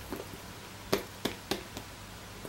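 A handbag being handled: about four light clicks and taps in quick succession as fingers work the front flap and its button closure.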